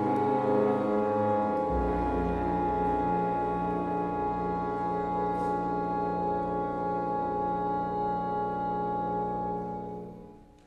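Chamber orchestra of strings, oboes, French horns and bassoon holding one long sustained chord. Its bass note drops lower a little under two seconds in, and the chord is released all together right at the end.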